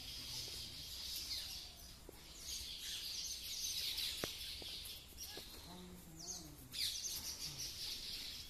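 A colony of baya weavers chattering in a dense, high-pitched chorus of quick downward-sweeping notes, swelling about halfway through and again near the end.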